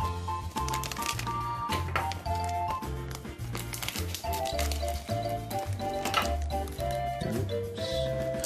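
Background music with a melody of held notes over a steady repeating bass line, with light clicks and rustles of trading cards and a foil booster pack being handled.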